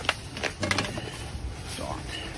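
A plastic laptop power adapter and its cord being handled and set down on a shelf: a few short clicks and knocks in the first second.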